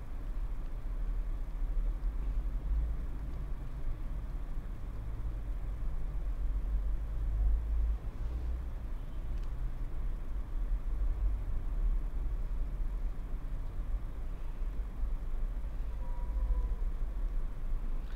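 A steady low rumble with a faint hiss above it and no clear events.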